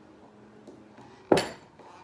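A single sharp metallic clink just over a second in, ringing briefly: a screwdriver knocking against a metal tray handle as it is screwed onto the wood.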